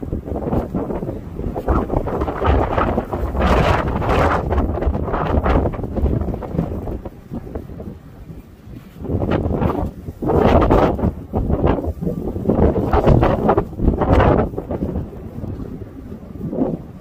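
Wind buffeting the microphone: a loud, irregular rumble that comes in gusts, easing off about halfway through before gusting up again.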